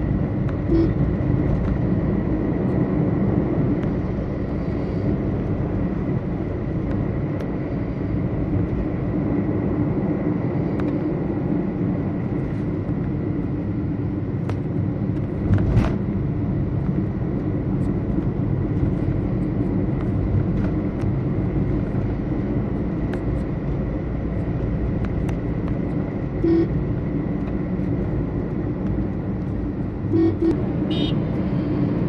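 Steady road and engine noise heard from inside a moving car's cabin. Short vehicle-horn toots sound about a second in and again near the end, and there is a sharp knock about halfway through.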